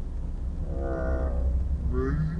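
Steady low drone of the Suzuki Alto's engine and tyres heard inside the moving car, with one drawn-out pitched call or tone about a second long near the middle.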